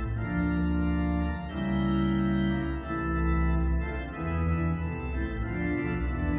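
Pipe organ playing a closing voluntary: sustained full chords over a deep pedal bass, changing about every second or so.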